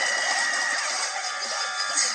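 Music and cartoon soundtracks from several videos playing at once through small computer speakers. The sound is thin with no bass, and a steady high tone ends about a second in.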